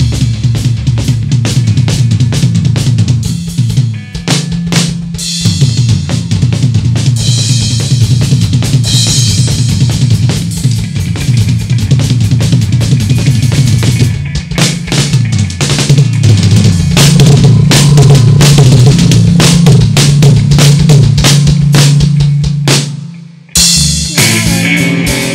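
Rock drum kit played hard and fast: rapid snare and tom hits over bass drum, with bursts of cymbal crashes. The playing cuts off suddenly shortly before the end, leaving a brief gap.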